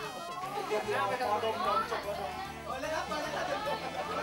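Several people talking over one another, with a background music bed whose bass line steps between low notes.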